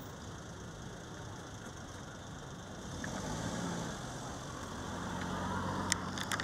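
A steady low engine hum, like an idling motor vehicle, that grows louder from about halfway through. Near the end comes a single sharp crack of a cricket ball impact in the nets.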